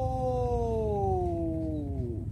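A man's voice holding one long, drawn-out call that slowly falls in pitch and ends near the end, with a steady low rumble underneath.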